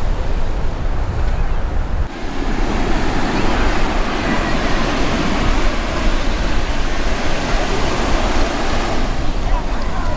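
Ocean surf breaking and washing onto a sandy beach, with wind rumbling on the microphone. About two seconds in, the sound suddenly shifts from a low wind rumble to a fuller wash of surf.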